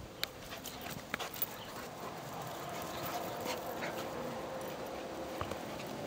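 Two dogs play-fighting on grass: scuffling with a few sharp clicks.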